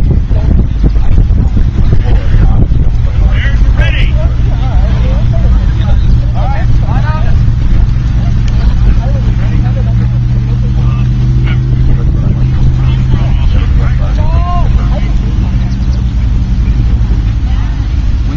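Outdoor field sound dominated by a heavy low rumble, with scattered short distant shouts and calls from the players. A steady low hum runs through the middle stretch.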